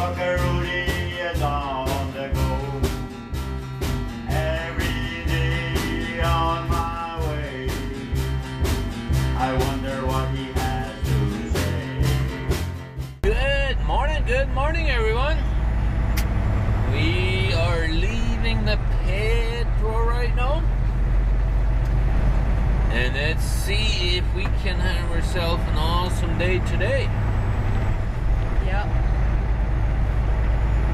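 Background music with a steady beat, cutting off suddenly about 13 seconds in to a semi truck's diesel engine running steadily, heard inside the cab as a low drone. A pitched voice rises and falls over the engine on and off.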